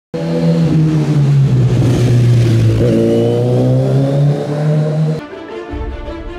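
Engine running at high revs, loud and steady, its pitch shifting about three seconds in; it cuts off abruptly just after five seconds and music begins.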